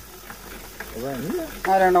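Conversation speech: a short voiced sound about a second in, then a person starting to speak, over a faint low steady hum.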